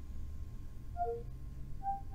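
Faint short electronic chime notes over a low steady hum: a descending pair of notes about halfway through and one more note near the end, the Windows 10 Cortana assistant's sound cues as it takes in a spoken command.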